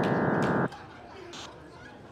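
Small test loudspeaker in a clear vented box playing the sync signal that opens an automated loudspeaker quality-control test: a loud, dense chord of many steady tones that starts abruptly and cuts off suddenly after under a second.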